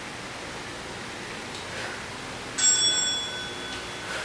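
A small bell dings once about two and a half seconds in and rings out for about a second, a bright metallic ring. It is an interval-timer signal marking the change to the next exercise.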